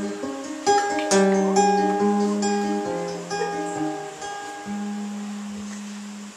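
Acoustic guitar playing an instrumental passage of chords and single notes that ring on, growing gradually quieter.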